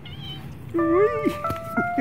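A domestic cat gives a single meow about a second in, its pitch rising then falling, over background music of simple held notes that begins just before it.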